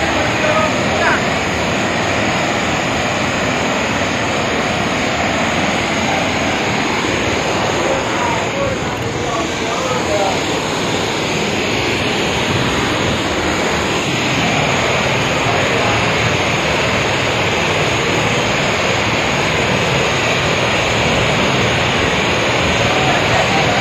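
Muddy floodwater rushing in a torrent and pouring over a washed-out road edge: a loud, steady rush of water.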